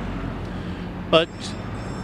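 Steady low rumble of road traffic, with a man saying one short word about a second in.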